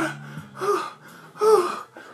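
A man's voice, in a puppet character's pained reaction, gives two short gasping cries that fall in pitch, one about half a second in and one about a second and a half in. Under them runs a faint steady low hum.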